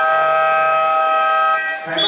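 Basketball game buzzer sounding one long, steady, loud blast of about two seconds that starts abruptly, with a brief break near the end before it sounds again.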